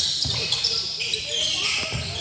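Basketball bouncing a few times on a hardwood gym floor, with players' voices calling across the echoing hall.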